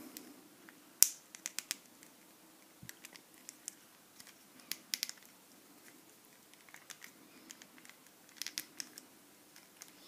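Small, sharp plastic clicks and taps from hard plastic action-figure parts being handled as a smoke-effect piece is slid under the shoulder armour. The sharpest click comes about a second in, with little clusters of clicks around the middle and near the end.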